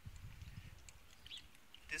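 Quiet outdoor background with a faint low rumble of wind on the microphone during the first second, easing off after that.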